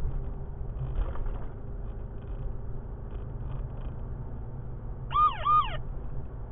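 Steady low road and engine rumble inside a moving car's cabin. About five seconds in, the Radar Reminder phone app sounds two quick chirping alert tones, each rising then falling in pitch: its warning of a speed camera ahead.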